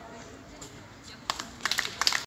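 A few scattered hand claps from a small audience, starting about a second and a quarter in and picking up near the end, over faint voices, just after a live band's song has ended.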